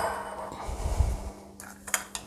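Soft kitchen handling noises: a brief rustle, a few dull low bumps and two light clicks near the end, as eggs and bowls are readied for beating.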